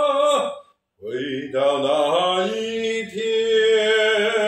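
A man singing a slow Chinese ballad with no accompaniment, in a strong voice with wide vibrato. A long held note ends about half a second in, there is a short breath of silence, and a new phrase starts about a second in, climbs and settles on another long held note.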